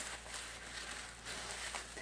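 Faint soft rustle of a wadded paper towel being pressed and dabbed on dry watercolour paper, over a low steady hum.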